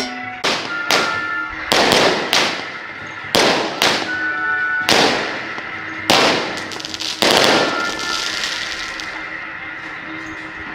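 Firecrackers going off in single loud bangs, about ten at irregular intervals over the first seven seconds, each dying away briefly. Music with held notes continues underneath.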